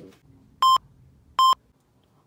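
Two short, identical electronic beeps at a steady high pitch, about 0.8 s apart.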